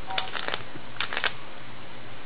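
A few short clicks and rustles in two quick clusters about a second apart, over a faint steady hum.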